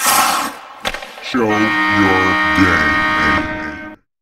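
Closing logo sting: a whooshing swell at the start, a sharp hit just under a second in, then a held musical chord that stops abruptly just before the end.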